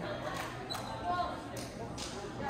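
Spectators talking in an echoing gymnasium, with a few sharp thuds of a volleyball bouncing on the hardwood court.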